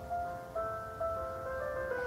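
Piano instrumental backing track playing a soft run of single notes, a new note about every half second.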